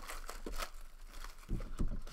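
Shrink-wrapped trading card boxes being handled: the plastic wrap crinkles, with a couple of soft knocks about one and a half seconds in as a box is set down.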